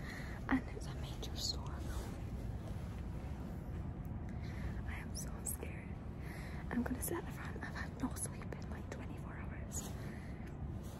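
A woman whispering close to the microphone over a steady low hum.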